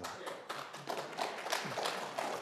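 Audience applauding: many scattered hand claps at a moderate level.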